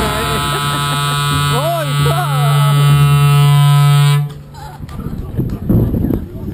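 Trumpet imitating a ship's horn: one long, steady low note, the loudest sound here, that cuts off sharply about four seconds in.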